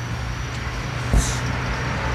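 Sledgehammer striking a large tractor tire once, a sharp thud about a second in, over a steady low hum.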